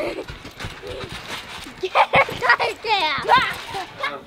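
Young children's excited voices, shouting and squealing. The loudest high, wavering cries come in the second half.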